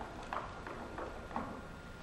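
Four light shoe taps on a wooden stage floor, about a third of a second apart.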